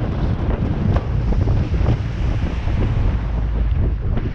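Wind buffeting the microphone on the bow of a moving jet boat, a steady loud rush with the sound of water running past the hull mixed in.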